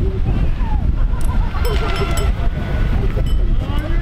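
Steady low wind rumble on the microphone while riding, with voices calling out faintly underneath.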